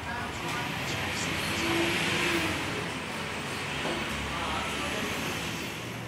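A passing vehicle, its noise swelling to a peak about two seconds in and then fading, with faint voices in the background.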